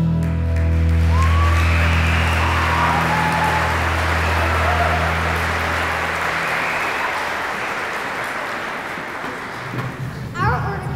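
A held final chord of the song's accompaniment, with audience applause swelling over it and a few cheers about a second in. The chord fades out at about six and a half seconds, and the clapping carries on, slowly tapering.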